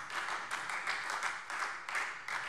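Light applause from members of the chamber: many hands clapping at a low level.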